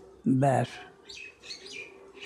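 A brief spoken sound from a man about half a second in, then faint, high bird chirps in the background.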